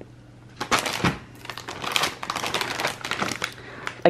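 Plastic frozen-food bag being handled and turned over in the hands, its packaging crinkling in a quick, irregular run of crackles that starts about half a second in.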